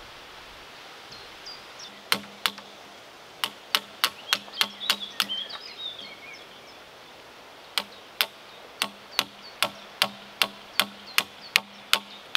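A hand tool striking a timber log being shaped: sharp blows about two to three a second, in two runs with a pause between, each with a short low ring from the wood. Birds chirp in the background.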